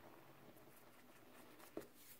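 Fingers raking through a bowl of dry Ajax powdered cleanser: a faint, soft gritty rustle, with one small crunch near the end.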